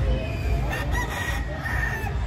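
A rooster crowing once, one long call that starts under a second in, over a low background rumble.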